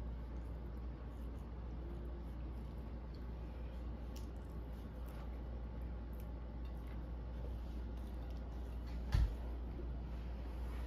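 Faint wet chewing of a person slowly eating a hot dog, with small mouth clicks, over a steady low hum. One short low thump, the loudest sound, about nine seconds in.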